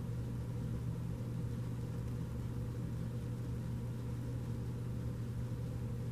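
Steady low hum of room background noise, even throughout with no other events.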